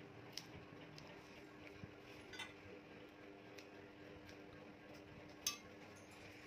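Haircutting scissors snipping hair at the fringe: a few faint, sharp metallic clicks spread out, the loudest near the end, over a faint steady hum.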